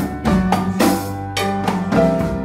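Live Afro-Cuban jazz band playing: drum kit with bass drum and snare strokes, congas and electric bass, with sustained pitched notes under the percussion.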